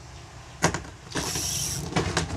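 Spinning reel whirring for under a second, a high mechanical buzz, after a sharp click about half a second in.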